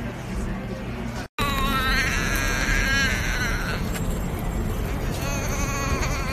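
A baby vocalizing in high, wavering squeals, in a long run about a second and a half in and again near the end, over steady background noise.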